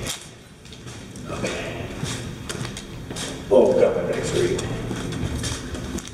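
Footsteps and scuffs on the concrete floor of a drainage pipe, with a man's voice coming in about three and a half seconds in.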